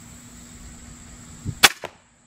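TenPoint Viper S400 crossbow firing: a low thump, then a sharp, loud snap as the string releases about a second and a half in. A fainter knock follows a fraction of a second later as the bolt strikes the foam deer target.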